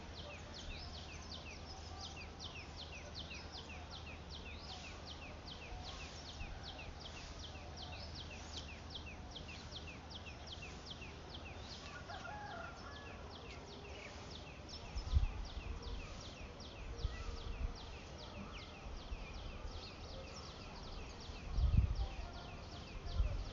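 Short high chirps repeating about three times a second over a faint outdoor hum for the first dozen or so seconds. In the second half come a few irregular dull thuds from dried moong bean pods being beaten with wooden sticks to thresh them.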